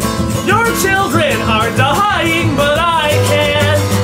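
Recorded folk-punk song playing: a busy band passage with a lead melody that slides up and down in pitch over a steady low end.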